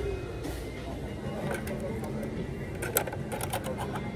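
Store background: a steady low hum with indistinct voices. About three seconds in, a quick run of sharp clicks and taps as a hand handles a boxed plastic toy truck.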